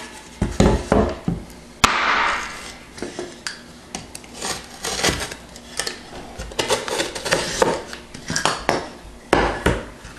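A piece of sheetrock being handled on a plywood board: a string of knocks and taps as it is lifted, turned and set down, with a scraping rustle about two seconds in.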